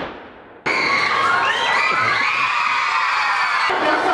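A large crowd of schoolchildren cheering and shouting, starting suddenly about half a second in as the dance music's last sound fades out.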